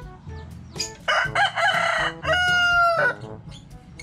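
A rooster crowing once, about a second in: a harsh opening followed by a held tone that drops at the end, over quiet background music.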